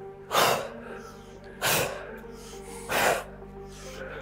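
A person breathing out hard three times, about 1.3 seconds apart, in time with the effort of bicycle crunches, over steady background music.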